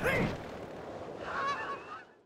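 Cartoon skydiving sound effects: a sudden whoosh at the start, then a steady rush like wind in free fall. About a second and a half in comes a short, high, nasal squawk-like cry.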